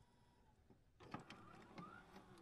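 Near silence: about a second of dead quiet, then faint scattered clicks and a faint rising sweep.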